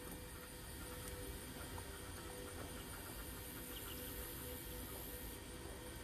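Faint steady background noise with a faint low hum and no distinct events; any sound of the knitting needles and yarn is too soft to stand out.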